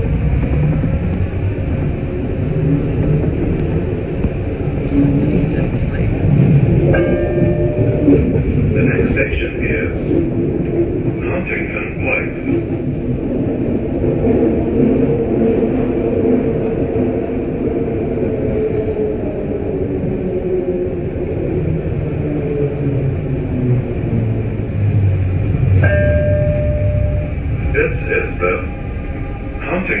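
Detroit People Mover train running on its elevated steel-rail guideway: a steady rumble of wheels on rail, with a motor whine that rises and falls in pitch midway through. Twice, a short held tone is followed by a recorded onboard announcement, the second naming the next stop, Huntington Place.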